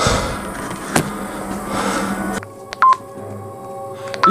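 Hissy background noise with a single click about a second in. It then drops to a quieter steady hum, and a desk telephone gives one short keypad beep near three seconds in.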